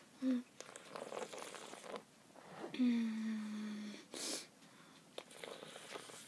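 A girl's closed-mouth vocal reactions to the sourness of a mouthful of sour Skittles. A short hum and breathy sounds come first, then a held moan of about a second that sinks slightly in pitch, then a short sharp breath.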